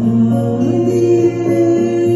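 A woman singing a Russian estrada pop song into a microphone over a recorded backing track. She holds long notes, stepping up to a higher one just under a second in.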